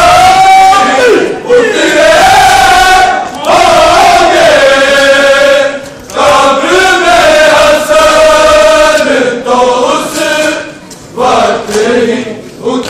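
Men's voices chanting a Shia mourning chant loudly over a crowd. The chant comes in long, drawn-out sung phrases with brief breaks every few seconds.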